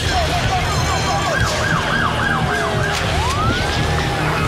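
Emergency-vehicle siren wailing in a fast up-and-down yelp, about four sweeps a second, then one long rising wail near the end, over a low rumble.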